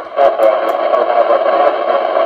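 Steady static hissing from a 2 m FM transceiver's speaker with the squelch open, a brief dip just after the start. This is the sign of the ISS signal fading out as the station drops below the horizon.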